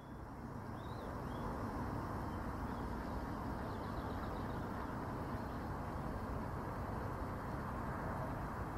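Steady outdoor background noise over open farmland, with a few faint high bird chirps in the first half.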